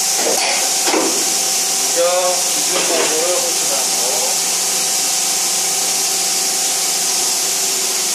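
Steady, loud hiss with a constant hum from a CNC machining center standing idle with its table exposed, unchanging throughout.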